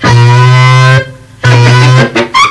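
Loud amplified band instrument, guitar-like, sounding long held low notes of about a second each, with a short break between them.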